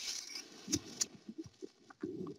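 Rustling of clothing and handling noise close to the microphone as a hand moves over a shirt, with two sharp clicks about three-quarters of a second and a second in.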